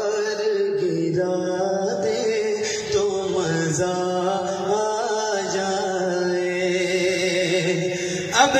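A man's voice singing an Urdu devotional kalam into a microphone, in long held notes with wavering ornaments, phrase after phrase.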